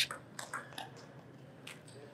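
Table tennis ball struck back and forth in a rally: a few sharp, faint clicks of the ball off the bats and table, with a short pause in the middle.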